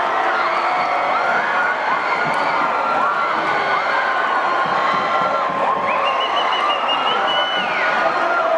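Stadium crowd cheering and shouting after a goal, many voices at once with long held shouts.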